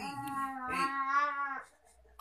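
A single long, held high-pitched vocal sound, one drawn-out vowel with a slight waver, lasting about a second and a half before it stops.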